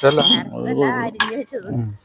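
A person talking throughout, with a brief high clink, like a utensil striking a dish, at the very start.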